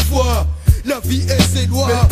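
French rap track: rapped vocals over a hip-hop beat with a steady deep bass line and drum hits, the bass dropping out briefly about halfway through.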